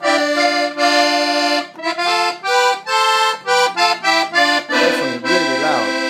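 Delicia piano accordion played in its three-reed musette register, one reed tuned to pitch, one sharp and one flat, giving a wide, really loud sound. A held chord, then a run of short chords and notes, then another held chord near the end.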